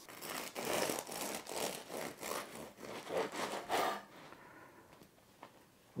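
Bread knife sawing back and forth through a loaf of Dutch tiger bread, its crispy rice-paste crust crunching under a run of strokes that stop about four seconds in.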